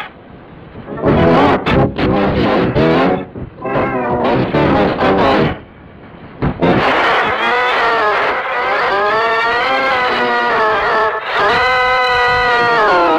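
A child screaming and wailing through a 'G Major' effect: several pitch-shifted copies of the voice layered into a warbling, chord-like sound. Broken, choppy screams in the first half give way about halfway through to one long wavering wail.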